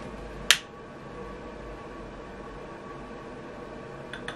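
A single sharp click about half a second in, the trigger of a long-reach utility lighter being pressed to light a candle, followed by faint steady room noise.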